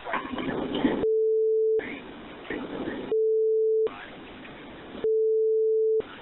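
Three steady single-pitch beeps, each just under a second long and about two seconds apart, with telephone-line hiss between them. They fall where the caller gives his phone number on a 911 call recording, in the manner of redaction tones blanking out the digits.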